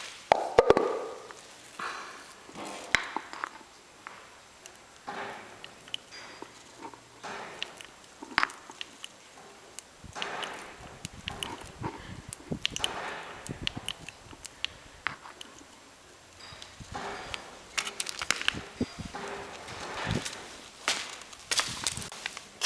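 Hand grease gun being pumped through its flexible hose into a lawnmower wheel hub: a string of short strokes with clicks, one every two to three seconds at irregular spacing.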